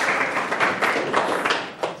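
Audience applauding, a dense patter of clapping that dies away near the end.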